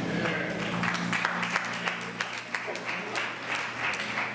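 A congregation applauding, with many sharp individual claps.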